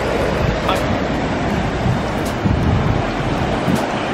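Melted butter sizzling steadily in a cast-iron skillet on a propane camp stove, with wind rumbling on the microphone.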